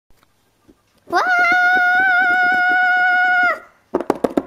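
A high-pitched voice holding one long cry, sliding up at the start, then steady for about two and a half seconds before it stops.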